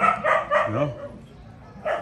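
A dog barking: a quick run of short barks in the first second, then more barks starting near the end.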